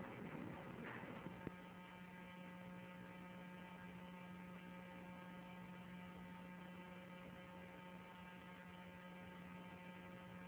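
Faint, steady electrical mains hum with a row of evenly spaced overtones, settling in after a small click about a second and a half in.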